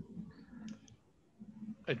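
A pause in a video-call conversation: faint room tone with a few soft clicks, then a man's voice starts right at the end.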